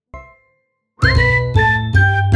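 A short musical ident jingle: a faint brief ding at the start, a pause, then about a second in a loud, bright run of chiming notes stepping down in pitch over a heavy bass.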